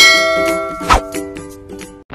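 A bright bell-like ding, struck once and ringing out with many overtones as it fades over about two seconds. It is the notification-bell chime of a subscribe-button animation, heard over light plucked-string background music.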